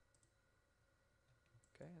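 Near silence: quiet room tone with a couple of faint computer mouse clicks.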